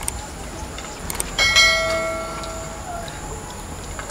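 Subscribe-button animation sound effect: a couple of mouse clicks, then a bell chime about a second and a half in that rings and fades away.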